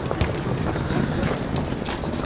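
Wind noise on a handheld camera's microphone, a steady low rumble over outdoor city background noise.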